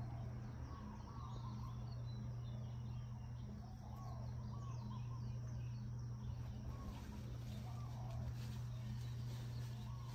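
Outdoor ambience: birds calling repeatedly in short chirps over a steady low hum.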